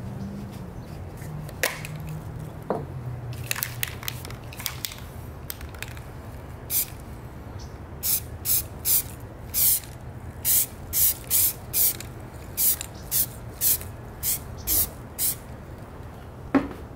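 Aerosol can of Rust-Oleum camouflage spray paint hissing in short bursts. There are a few scattered sprays at first, then a quick run of about fifteen short sprays in a row from about halfway in.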